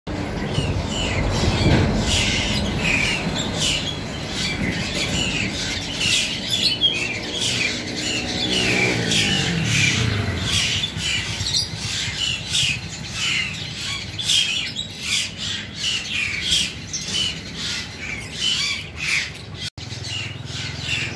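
Small caged birds, sunbirds among them, chirping busily: many short, high calls, several a second, throughout. A low droning sound rises and falls in pitch around the middle.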